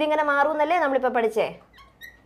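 A woman's voice speaking for about a second and a half, then stopping.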